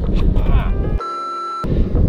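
Wind buffeting the microphone outdoors, a dense low rumble. About a second in it breaks for half a second of a steady high beep.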